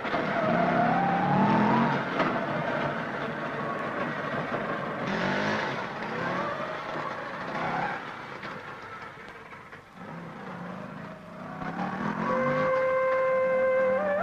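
Auto-rickshaw engine running and revving, its pitch rising in several surges; music comes in near the end.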